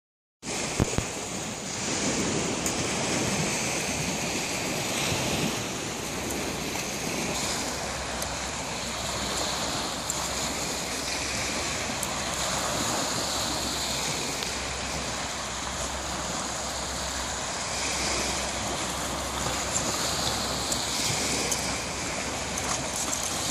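Steady wash of small waves breaking on a beach, mixed with wind on the microphone, with a couple of sharp knocks about a second in.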